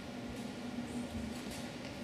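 Quiet indoor sports hall room tone with a steady low hum and a few faint ticks.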